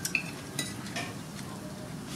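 A metal spoon clinking and scraping against a plate of rice as a child eats: a few light clinks about half a second apart.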